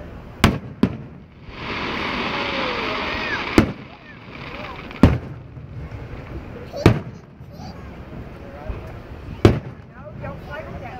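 Aerial firework shells bursting overhead: six sharp booms at uneven intervals. A loud steady hiss lasts about two seconds early in the run.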